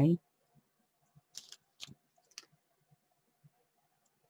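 Mechanical pencil writing on a paper tag: a handful of short, faint scratches of the lead on paper, bunched between about one and two and a half seconds in.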